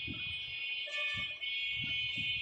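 A steady high-pitched electronic buzzing tone, held without a break.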